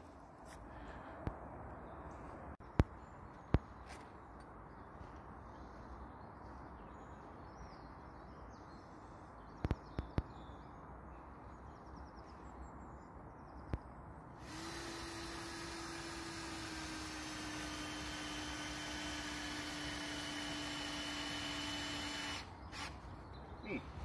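A few sharp, separate knocks of a hatchet chopping a small piece of wood into a tooth shape. Then, about two-thirds of the way through, a cordless drill runs steadily for about eight seconds, its pitch sagging slightly under load, as it drives a screw into a log, and it stops near the end.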